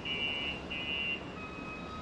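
Road traffic on a city street: a steady wash of passing car noise, with faint steady high-pitched tones over it that break off and change about halfway through.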